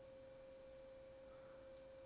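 Near silence with a faint, steady, single-pitched hum held unbroken throughout.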